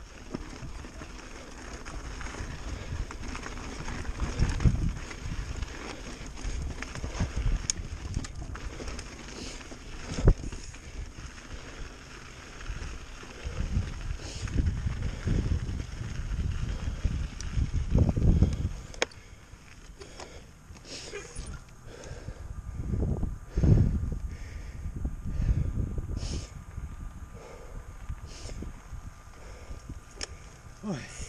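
Pivot Firebird full-suspension mountain bike descending rocky singletrack: tyres rolling and rattling over dirt and rock, the bike clattering, and wind on the microphone in gusts. A sharp knock comes about ten seconds in.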